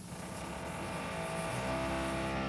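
A steady low hum with many evenly spaced overtones, growing louder about halfway through.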